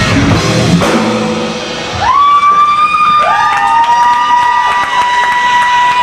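Live rock band with drums and distorted electric guitar, stopping about a second in. Then sustained electric guitar feedback: one tone slides up and holds about two seconds in, and a second, slightly lower tone slides up and holds alongside it a second later.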